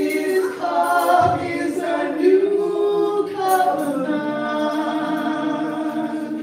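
Two women singing a gospel communion hymn into microphones, voices carried on long, slowly sliding held notes with no instruments heard.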